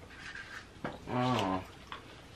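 A single click, then a short low hummed "mm" from a person that steps slightly down in pitch and lasts about half a second.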